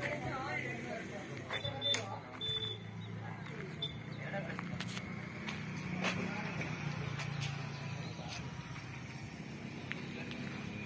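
People talking in the background, mostly in the first second, over a low steady hum, with a few scattered clicks.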